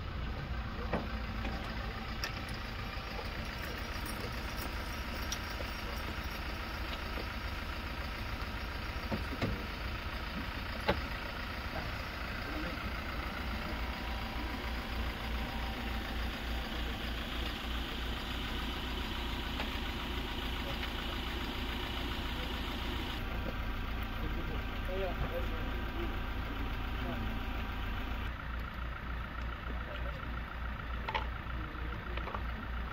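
Stretched Toyota SUV hearse's engine idling steadily with a low regular throb, with voices in the background and a few sharp knocks.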